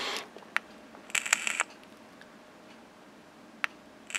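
Handling noise from a small vape pod device turned in the fingers: a lone click, a short rattly clatter of clicks about a second in, and another single click near the end.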